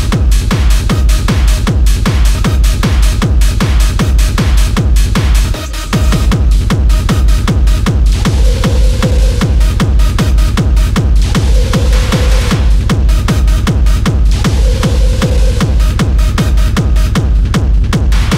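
Hard techno track with a fast, pounding four-on-the-floor kick drum, about two and a half kicks a second, and a short break in the kick about six seconds in.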